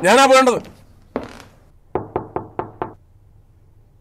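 Knuckles knocking on a door: one knock about a second in, then a quick run of five knocks. A voice calls out briefly at the very start.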